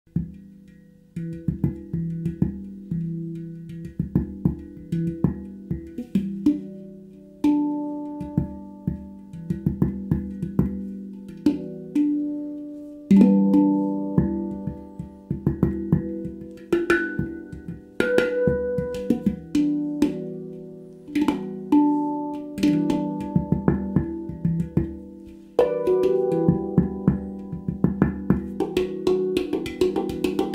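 Stainless-steel handpan, a Zaora E Magic Voyage 9, played with the hands: ringing struck notes that sustain and slowly die away, interleaved with quick finger taps. The playing starts about a second in.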